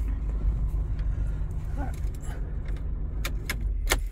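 2013 Mercedes-Benz GLK 250 BlueTEC's four-cylinder diesel engine idling, a steady low rumble heard inside the cabin, cut off abruptly at the very end. A few sharp clicks come just before it stops.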